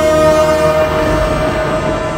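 Dramatic background score: a held chord with a low rumble beneath it, slowly fading.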